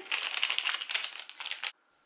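Clear plastic bag crinkling as it is handled, a dense run of crackles that stops abruptly near the end.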